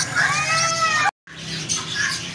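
Chattering and chirping of caged birds, with one long meow-like call that rises and falls in pitch for about a second early on. A little past halfway the sound drops out for an instant at an edit, and the chirping goes on after it.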